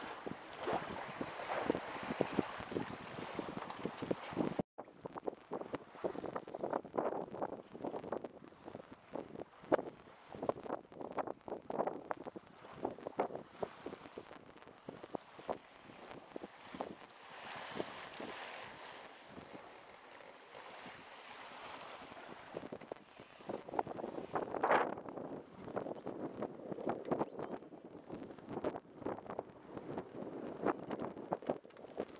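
Water rushing and splashing against the hull of a small Marsvin double-ender sailboat under sail, with wind buffeting the microphone. The sound drops out for a moment about four and a half seconds in.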